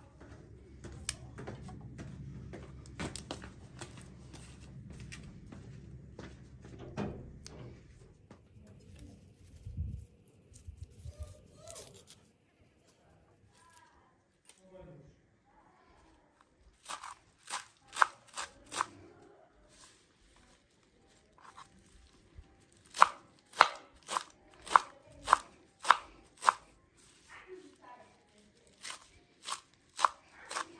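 A kitchen knife chopping fresh herbs on a wooden cutting board: a short run of sharp strikes a little past the middle, then a longer, louder run of about two strikes a second near the end. Before the chopping there is a low steady rumble.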